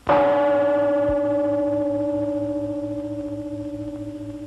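A gong struck once, ringing with a steady pitch and a slow pulsing throb as it fades.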